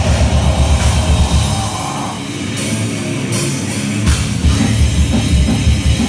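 Grindcore band playing live, recorded on a phone from beside the stage: fast, heavy drums and distorted guitars. About two seconds in, the bass and kick drum drop away, leaving a few cymbal hits. The full band comes back in about four seconds in.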